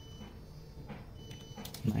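A few faint computer keyboard keystrokes over a steady low hum, as a tank fill percentage is typed into a loading computer; a man's voice starts near the end.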